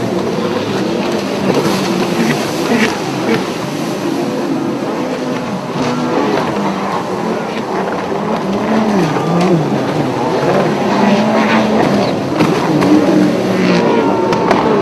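Engines of several racing runabout jet skis at speed, their overlapping pitches rising and falling.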